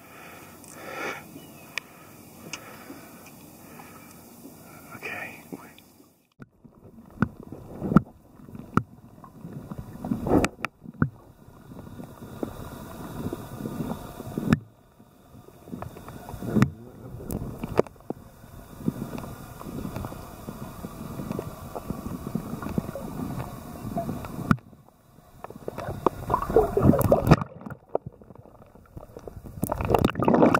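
Water sloshing and gurgling around a camera held underwater, in irregular surges broken by several abrupt cuts. The first few seconds are a quieter, steady background hiss.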